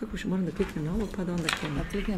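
A woman speaking quietly, softer than the lecture around it; the words are not made out.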